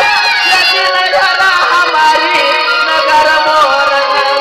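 Loud live folk band music, with a reedy melody instrument carrying a wavering tune over steady accompaniment.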